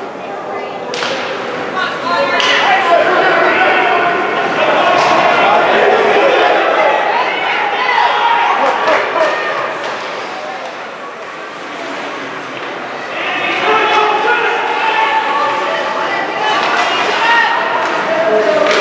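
Hockey game in an ice arena: many spectators talking and calling out, with sharp cracks of sticks on the puck and the puck hitting the boards, echoing in the rink. The voices are loudest in the first half and swell again near the end.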